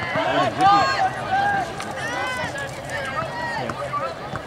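Several voices shouting and calling out across a soccer field during play, overlapping one another. The calls are loudest in the first second or so and thin out toward the end.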